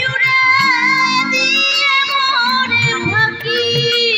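A woman sings a Bengali folk song live into a microphone, holding long notes with a wavering ornamented pitch over instrumental accompaniment. The drum beat drops out at the start and comes back in about three seconds in.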